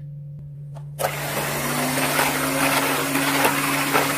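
Electric hand mixer switched on about a second in, its motor rising briefly in pitch and then running steadily as the beaters whip eggs, sugar, SP emulsifier and vanilla powder in a bowl. A low hum is heard before it starts.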